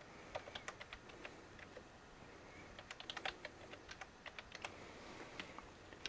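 Computer keyboard being typed on faintly in two quick runs of keystrokes, a new password entered and then confirmed.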